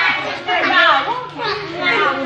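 Voices of children and adults talking over one another: indistinct chatter with several voices overlapping.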